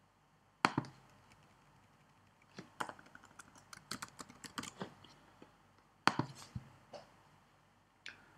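Typing on a computer keyboard: a quick run of keystrokes from about two and a half to five and a half seconds, with louder single clicks about a second in and again around six to seven seconds.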